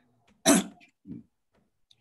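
A man coughs once sharply about half a second in, then makes a softer, lower throat sound about a second later.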